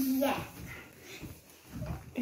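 A child's short "yeah", then quiet room sound with no clear event.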